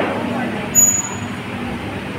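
Restaurant dining-room background: indistinct voices over a steady low hum, with a brief high ping, like a metal clink, a little under a second in.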